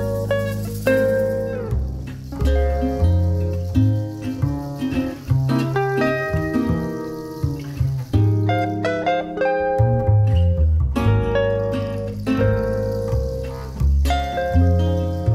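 Gypsy-jazz style acoustic guitar, amplified through a taped-on copy of a Stimer pickup, playing quick single-note melodic runs over upright double bass notes.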